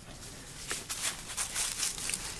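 Irregular rustling and crackling of dry leaf litter and clothing as people shift on their feet.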